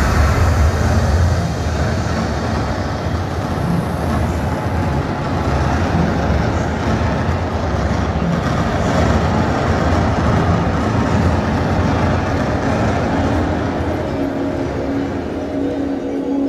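Loud, steady low rumble from an immersive exhibition's sound system, with a steady humming tone coming in near the end.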